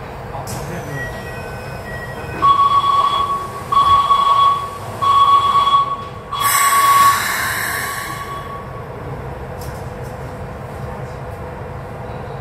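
Train sounds at a station platform: a steady high tone in four pulses of about a second each, ending in a short burst of hiss, over a low steady rumble.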